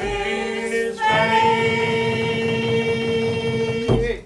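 Unaccompanied folk vocal group singing in close harmony, ending a song on held notes: one chord shifts about a second in to a final long chord, held for about three seconds and released together near the end.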